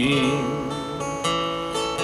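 Steel-string acoustic guitar strummed a few times in a slow ballad accompaniment, its chords ringing between sung lines. The tail of a held sung note fades out at the start.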